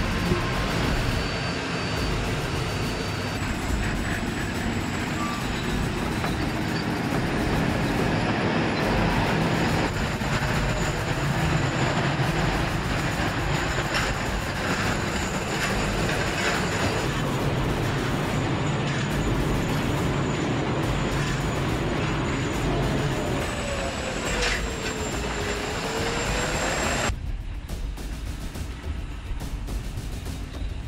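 T-80BVM main battle tank on the move: its gas-turbine engine running with a thin, steady high whine over a low rumble. About three-quarters through, a tone dips and rises again, and near the end the sound abruptly becomes duller and quieter.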